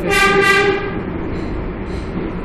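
R142A subway train's horn giving one short toot, under a second long, over the steady rumble of the train running on the rails.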